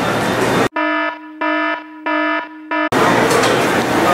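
Busy indoor crowd hubbub, cut off abruptly by about two seconds of a buzzing electronic alarm-like tone over dead silence, pulsing about twice a second, four pulses in all. The crowd hubbub then returns just as abruptly.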